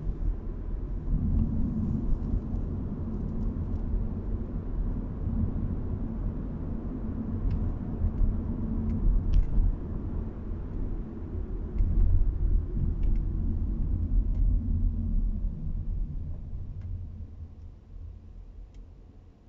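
Low road and engine rumble heard inside the cabin of a 2021 Audi A4 Avant while driving. It is steady, then dies down near the end.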